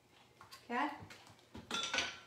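A woman says "okay", then near the end a piece of glassware is set down on the counter with a light clink that rings briefly.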